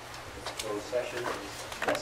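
Indistinct voices of people talking at a conference table in a small meeting room, with a couple of sharp knocks, the louder one near the end.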